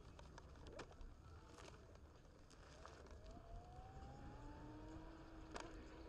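Faint rolling noise of a Onewheel V1's tyre on a rough path, a low rumble with a few sharp clicks from grit and board. Thin whines from the hub motor rise slowly in pitch through the second half as the board picks up speed.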